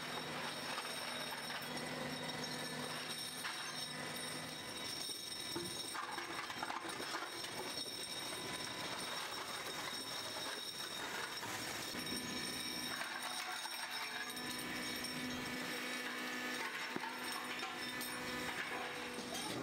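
Metal brake shoe castings clinking and clattering against each other as they are pulled by hand out of a shot blast machine's drum, over a steady machinery hum.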